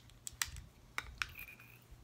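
A few sharp clicks from makeup packaging being handled, with a brief high tone in the middle.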